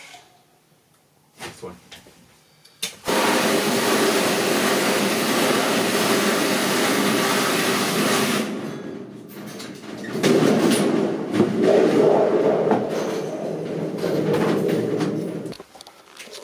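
Cordless drill driving a hole saw through a steel sheet: a steady grinding cut starts a few seconds in, pauses briefly about halfway, then goes on with a screeching tone before stopping just before the end.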